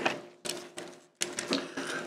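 Plastic parts and joints of a Transformers Optimus Prime Voyager Class action figure clicking as it is twisted and repositioned mid-transformation: a run of small irregular clicks, bunching up in the second half.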